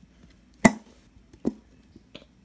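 Two sharp plastic knocks about a second apart, as an upside-down glue bottle is shaken and tapped against a plastic bowl to empty the last of the glue.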